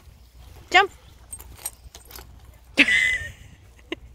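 Short, high calls of a person urging a dog to jump, each call falling in pitch, with a little metallic jingling and clicking in between and a brief rustling burst about three seconds in.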